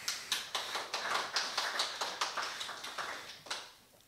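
Audience applauding: many hands clapping, fading out shortly before the end.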